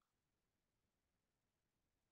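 Near silence: digital silence with no audible sound.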